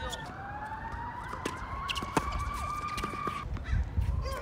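A siren wailing in a slow rising sweep that cuts off about three and a half seconds in. A few sharp knocks of a tennis ball sound over it.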